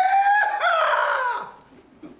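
A rooster-like crow, a long high call that is held, wavers, then glides down and stops about one and a half seconds in.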